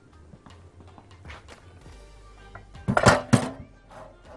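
Kitchenware being handled on a counter: faint clinks, then a loud clatter of a couple of quick knocks about three seconds in, over soft background music.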